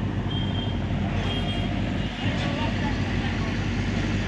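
Diesel engine of a JCB backhoe loader running steadily close by, with two short high beeps in the first two seconds.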